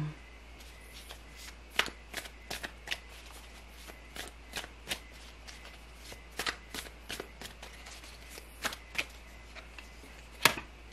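A deck of tarot cards being shuffled by hand: a loose, irregular series of short card snaps and slaps, a couple every second.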